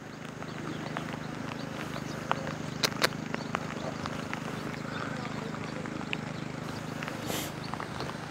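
A steady wash of outdoor noise from rain and a swollen, fast-running river in flood, with many small irregular taps close to the microphone, a couple of them louder about three seconds in.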